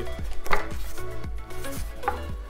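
Handling noise from a pine tabletop being moved and gripped by hand: one sharp wooden knock about half a second in, then a few lighter taps and rubs.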